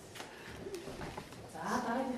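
Quiet classroom murmur of children's voices, with a few light knocks, and a voice rising briefly near the end.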